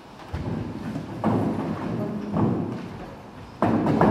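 Thumps and shuffling of people getting up from metal folding chairs and walking off across a stage floor, in several loud bursts.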